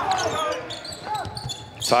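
Court sounds of a basketball game in an empty arena: a ball bouncing and brief short calls or squeaks.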